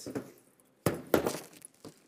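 A sudden knock a little under a second in, followed by a brief clinking rattle lasting about half a second.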